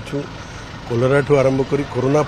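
A man speaking Odia into reporters' microphones, with a short pause near the start.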